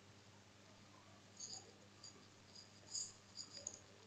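Near silence broken by several short, faint, high-pitched squeaky scratches of a stylus writing on a tablet, starting about a second and a half in.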